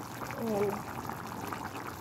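Pot of chicken and corn broth bubbling at a simmer: a steady, fine crackle of small bubbles. A brief vocal sound comes about half a second in.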